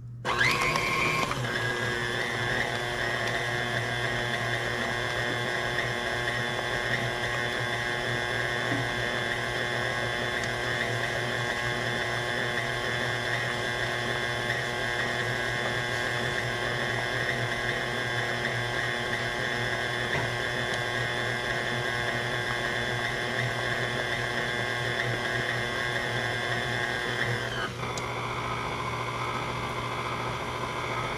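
KitchenAid Classic tilt-head stand mixer switching on and running steadily, its paddle beating thick cream-cheese cheesecake batter: a motor-and-gear whine over a low hum. It spins up within the first second, and near the end its tone changes and it drops a little in level.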